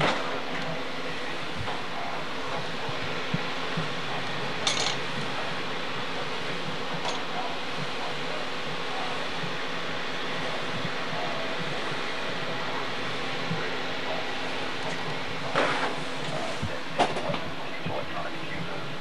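Steady hum and hiss of room air-handling and equipment cooling fans, with a few brief handling noises from the moving handheld camera about five seconds in and again near the end.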